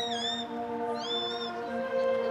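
Concert band playing sustained chords. Over it come two short, high cries that swoop up and then down, one at the start and one about a second in.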